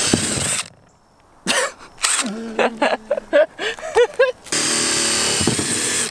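Cordless drill boring into the thick plastic lid of a bin, whirring in a short burst at the start and in a steady run of about a second and a half near the end. It is drilling a series of holes by hand to cut out an opening for a drain pipe, for lack of a hole saw.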